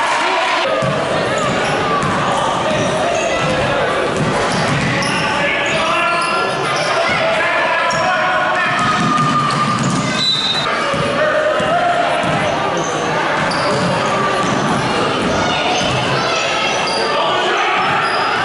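A basketball bouncing on a hardwood gym floor during a children's game, with overlapping shouts from players and spectators echoing in the large hall.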